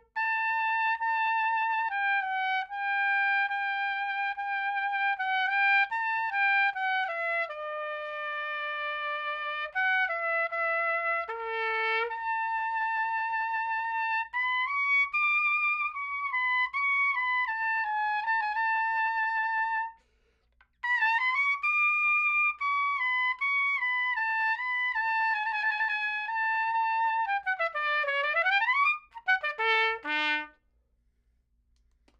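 Adams piccolo trumpet, silver-plated with a gold brass bell, large bore, played solo in A. It plays a melodic passage of held and moving notes, with a short break about two-thirds of the way through and a quick run that dips down and climbs back up near the end.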